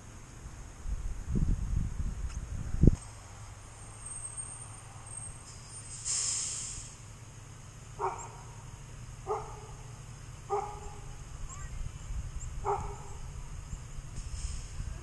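A dog barking four times, a second or two apart, over a low steady rumble. A single sharp knock comes about three seconds in, and a short hiss a few seconds later.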